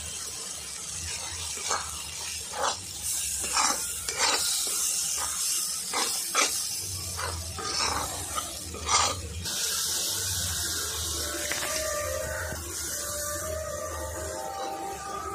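Spice masala sizzling in a hot black iron wok, stirred with a flat spatula that scrapes across the pan in repeated short strokes. About two-thirds of the way through the scraping stops and a steadier, fainter hiss with a few thin tones carries on.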